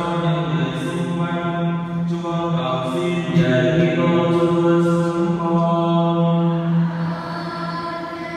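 Slow sung chant in a Catholic Mass: voices holding long notes of a sung prayer, with the notes changing every second or so. It grows quieter over the last second or two.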